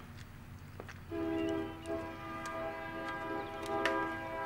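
A steady held chord of several tones from the episode's soundtrack, starting about a second in and sounding like a distant horn, with a few faint clicks.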